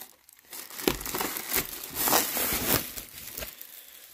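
Clear plastic wrapping crinkling in irregular bursts as it is pulled off a cardboard box.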